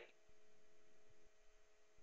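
Near silence: a faint steady electrical hum in the room tone of a recorded lecture microphone.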